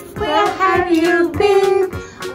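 Background children's music: a high, childlike singing voice over a steady beat.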